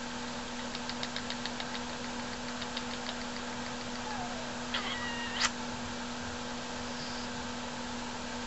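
Galah cockatoo held close to the face making a run of soft quick clicks, about five a second, then a short squeaky call ending in a sharp click about five seconds in.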